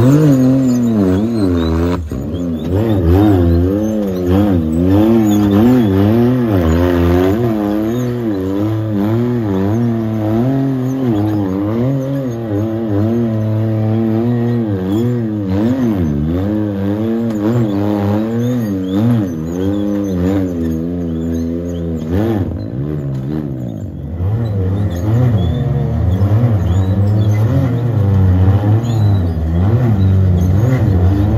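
Can-Am Maverick X3 UTV's turbocharged three-cylinder engine revved up and down again and again as it crawls over boulders, the pitch rising and falling every second or so.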